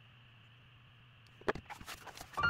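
Faint room tone with a low hum, then about one and a half seconds in a sharp tap and a few quick paper rustles as a spiral-bound workbook is picked up and moved across the desk.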